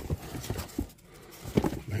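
Handling of a paper instruction sheet: a few light clicks and taps in the first second, with soft paper rustling, then a quieter moment.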